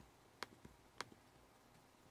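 Two computer mouse clicks, about half a second apart, over near silence.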